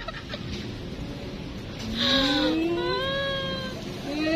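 A domestic animal's long cry starting about two seconds in, rising in pitch for about a second and then held on a higher note before fading near the end.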